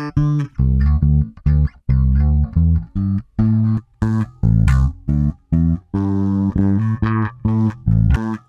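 Electric bass guitar riff, short detached plucked notes several a second stepping between a few pitches, played back through layered bass tracks with a chorus effect on one layer.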